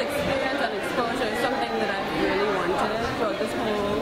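Speech only: a young woman talking, over the chatter of a crowd behind her.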